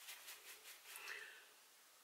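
Makeup fan brush being whipped back and forth to clear it: a rapid run of faint, airy flicks, several a second, that stops about one and a half seconds in.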